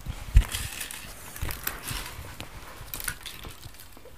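Crunchy snacks, sweetened puffed wheat and crisps, being chewed and handled, a run of small crunches and crackles, with one sharp thump about half a second in.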